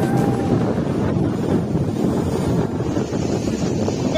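Strong wind buffeting the microphone in a loud, rough, continuous rumble, with storm waves surging and breaking against a seawall underneath.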